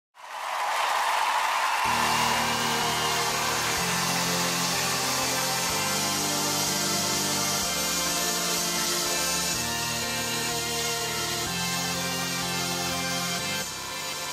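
Backing music for a dance routine. It opens with a swelling rush of noise for about two seconds, then settles into sustained low chords that change about every two seconds.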